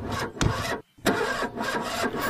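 Car engine cranking and sputtering without catching, in two tries broken by a short silence just under a second in, with a sharp pop during the first try. The engine fails to start.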